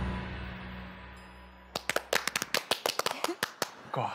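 Instrumental music fading out, followed about two seconds in by two men clapping their hands in a quick, uneven run of claps.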